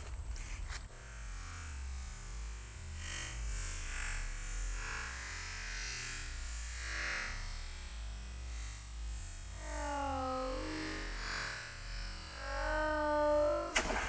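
Slowed-down, distorted audio of a slow-motion shot, sounding electronic and warbling. A few drawn-out sliding tones come in about ten seconds in and again near the end.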